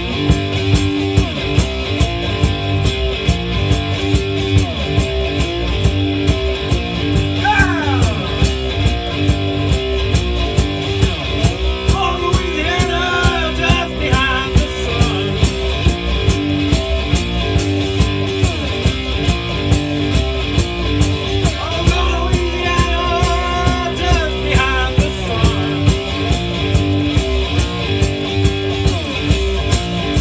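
Amplified three-string fretless cigar box guitar playing a heavy blues riff, with a foot-played kick drum and hi-hat keeping a steady beat. Notes slide up and down the neck, with a sliding run about eight seconds in and higher lead lines around twelve and twenty-two seconds in.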